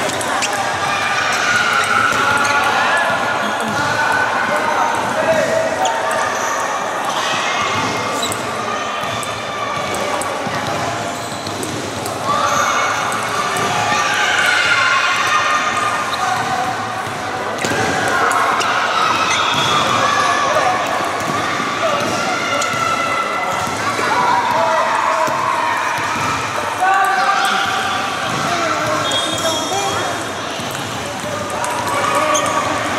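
Table tennis balls clicking off bats and the table in rallies, over a steady babble of many voices in a sports hall.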